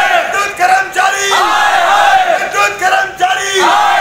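A crowd of men shouting protest slogans together, short phrases repeated about once a second.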